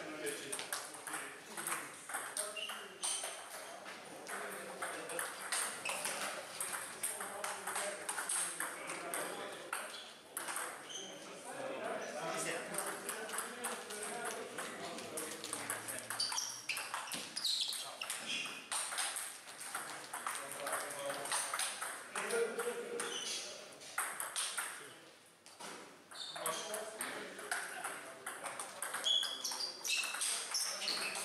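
Table tennis rallies: a ping-pong ball being struck by rubber-faced paddles and bouncing on the table, a quick run of sharp clicks that stops and restarts between points.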